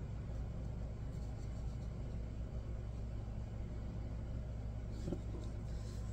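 Steady low hum of background room noise with no distinct sound events, and a faint soft tick about five seconds in.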